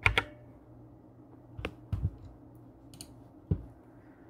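Several short, sharp clicks at irregular intervals, over a faint steady low hum.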